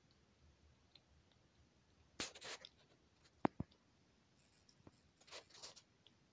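Baby skunk chewing hard dry food: faint crunching about two seconds in and again near the end, with two sharp cracks in between as it tries to break up the pieces.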